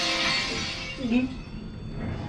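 Pre-show film soundtrack playing in the room: the tail of a glass-shattering sound effect dies away over eerie music, with a brief swooping tone about a second in.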